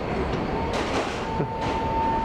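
Loud, steady rumble of vehicles moving close by, with a steady high whine that starts under a second in and holds past the end.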